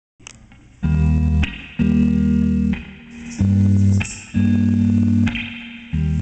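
Live rock band playing a song's opening: Stratocaster-style electric guitar and bass guitar hitting a series of loud held chords, about one a second, each cut off short, with cymbal washes between some of them.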